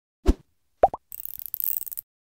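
Intro sting sound effects: a short low thump, then two quick rising plops, then a bright hiss with faint ticking that stops suddenly.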